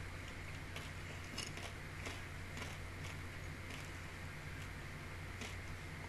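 Room tone through a desk microphone: a steady faint hiss with a low electrical hum, broken by a few soft clicks.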